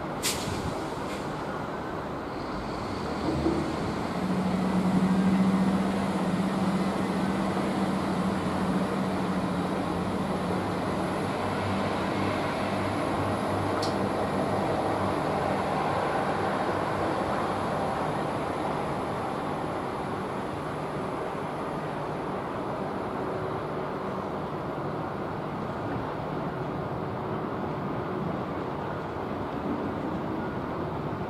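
Irish Rail 22000 Class InterCity railcar, a diesel multiple unit, pulling away from the platform. A sharp click comes right at the start, and about three and a half seconds in its engines pick up to a steady low hum, loudest around five seconds in. The running noise then slowly grows fainter as the train draws away.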